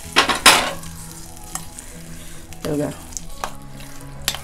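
Steel spoon stirring and scraping bharit in a stainless steel bowl, with a couple of sharp clinks about half a second in and lighter clicks later. The hot oil tempering poured on just before is still sizzling faintly into the mash.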